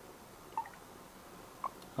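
Quiet room tone broken by two faint short clicks, one about half a second in and one near the end.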